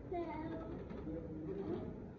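Indistinct talking: a voice speaking quietly, with no words made out.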